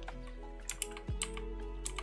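Several scattered clicks of a computer keyboard, over soft background music with held low notes.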